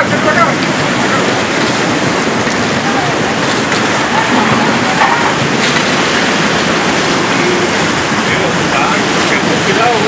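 Flash mudflow of water, mud and debris rushing steadily past, a loud, even rush of flowing water.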